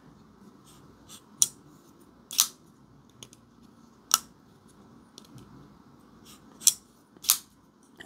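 CJRB Scoria folding pocket knife being worked by hand: a series of sharp clicks, about five loud ones spaced a second or more apart plus fainter ticks, as the blade is moved against its detent and lock bar. Two of the clicks come close together near the end.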